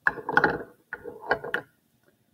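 Plastic measuring cups with metal handles clattering and clinking as they are nested together and set down on a hard board, in two short bursts.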